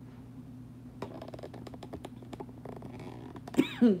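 Light clicking and rustling of things being handled on a kitchen counter, over a steady low hum. A short spoken word comes near the end.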